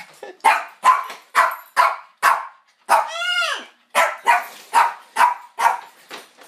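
A dog barking rapidly, about ten sharp barks at roughly two and a half a second. About three seconds in there is one longer yelping call that rises and then falls in pitch.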